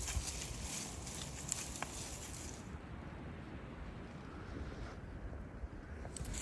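Faint wind buffeting the microphone, a low uneven rumble, with a higher hiss over it that cuts off abruptly about three seconds in.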